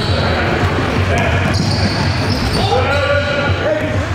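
Live basketball game sound in a gym: the ball bouncing on the hardwood court, sneakers squeaking, and players' voices ringing in the large hall.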